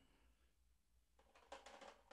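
Near silence: room tone, with a few faint clicks and rustles near the end.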